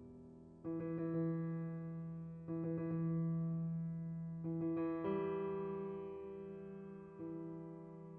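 Slow piano music: soft chords struck every two seconds or so, each ringing on and fading before the next.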